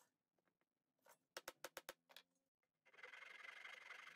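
Faint Irwin flush-cut pull saw rasping through the end of a purpleheart dowel, starting about three seconds in, after a quick run of about six light clicks.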